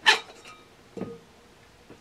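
Metal can cover of a Bell System ring relay set being slid off its base: a sharp metallic scrape right at the start that fades with a faint ring, then a softer knock about a second in.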